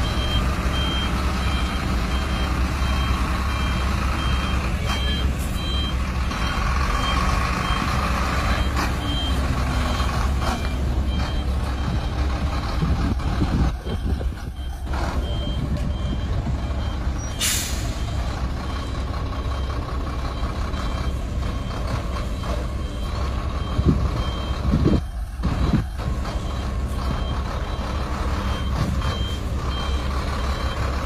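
Articulated heavy truck's diesel engine running steadily as it manoeuvres, with its reversing alarm beeping in a steady repeated pattern. A short air-brake hiss a little past halfway through.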